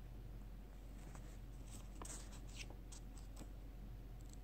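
Thin Bible pages rustling faintly as they are turned and handled, a few short papery crackles from about a second in, most of them near the middle.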